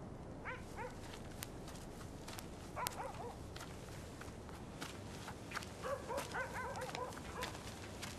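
A dog barking and yelping in short bouts: about half a second in, around three seconds in, and again in a longer run from about six seconds in.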